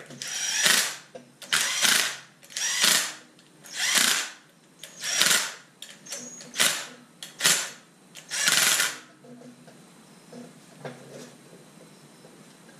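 Cordless impact driver run in eight short bursts about a second apart, spinning flywheel bolts down snug into the crankshaft, then falling quiet for the last few seconds.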